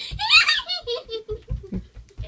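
A young girl's excited squealing laughter, rising high in pitch, over a run of short low thumps from her feet jumping on the floor.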